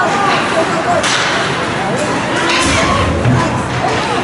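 Ice hockey being played in a rink: skates scraping the ice and sticks clacking on the puck, with two sharp scrapes or hits, one about a second in and one past the middle, over shouting voices and arena hubbub.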